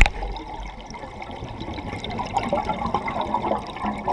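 Scuba exhaust bubbles gurgling and crackling, heard underwater through the camera housing, growing busier from about two seconds in. A short knock comes at the very start.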